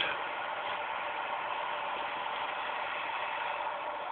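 Steady background hiss, even throughout, with no distinct sounds in it.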